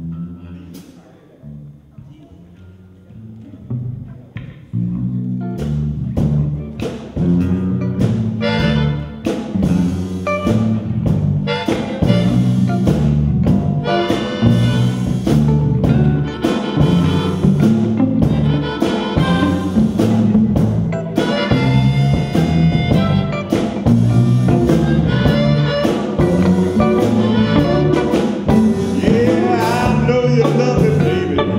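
A live blues band. It opens quietly on low bass notes, then the full band comes in about five seconds in with drums, electric guitars, electric bass and a harmonica.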